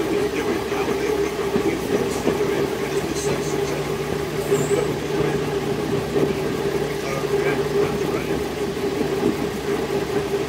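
First-generation diesel multiple unit under way, heard from an open carriage window: a steady drone from its underfloor diesel engines and transmission, with wheel and track noise. A lower note joins the drone about three seconds in.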